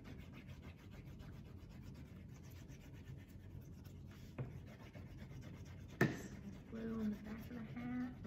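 Quiet rubbing and handling of paper craft pieces on a tabletop, with a small tap about four seconds in and a sharper one about six seconds in. A faint voice near the end.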